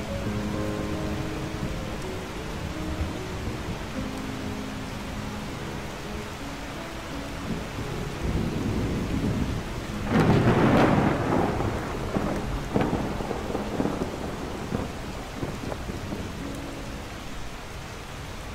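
Rain falling steadily, with a loud rumble of thunder about ten seconds in and a sharper crack shortly after.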